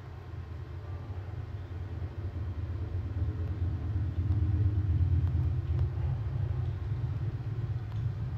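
A low rumble that swells over the first few seconds, then holds.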